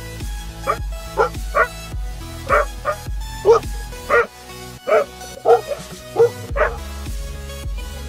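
Dogs barking, about a dozen short barks at irregular intervals, over background music.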